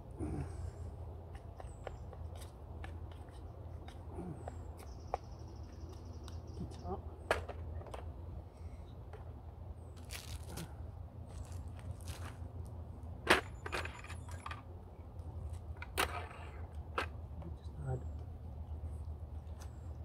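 A plastic spork stirring pasta in a steel camping pot, with scattered clinks and scrapes against the metal over a steady low rumble.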